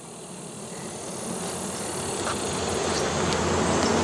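Honeybees buzzing around an open hive, a steady hum that swells gradually louder; the colony is agitated.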